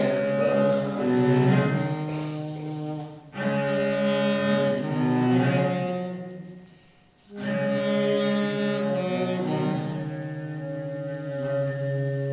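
Cello playing slow, long-held notes in three phrases, with a brief break about three seconds in and a longer, almost silent pause about seven seconds in.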